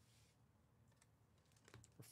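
Near silence: room tone with a few faint clicks about a second in and near the end.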